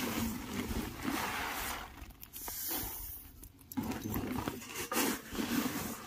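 Threshed rice grain and woven plastic sacks rustling as grain is scooped and packed into the sacks, coming in uneven stretches.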